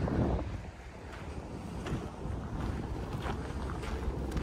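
Wind blowing across the microphone outdoors, an uneven low rumble.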